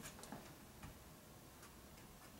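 Near silence broken by a few faint, irregular clicks and taps of plastic acrylic paint bottles being handled.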